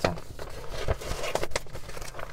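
Hands rummaging through and pulling out papers, with a few soft rustles and small knocks over a low steady hum inside a car.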